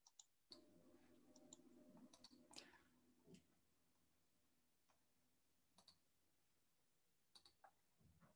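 Near silence: faint room tone with a few scattered soft clicks.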